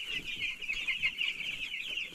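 A large flock of chicks about two weeks old peeping together: a dense, unbroken chorus of many overlapping high-pitched peeps.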